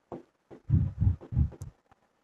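Chalk strokes on a blackboard picked up as a few dull, low knocks and thuds while a word is written.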